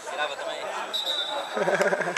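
Indistinct men's voices talking and calling out, with one voice louder and closer near the end.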